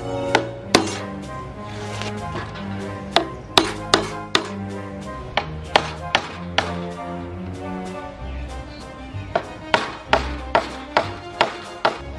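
Hammer striking steel nail-in staples into a wooden beam, in quick runs of sharp taps: two near the start, a run in the middle and another near the end. Background music plays underneath.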